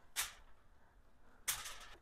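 Tomato halves being set down on aluminium foil: two short crinkles of the foil, the second a little longer, near the end.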